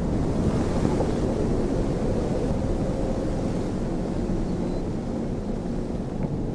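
A steady rushing noise like wind or surf, with a deep rumble underneath, holding level throughout.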